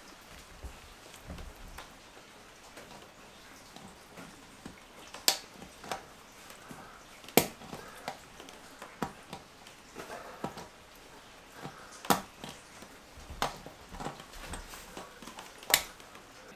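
Leatherman multi-tool pliers clicking against a knobby motorcycle tyre as they grip and work a nail out of the tread: sharp clicks every couple of seconds over faint handling noise.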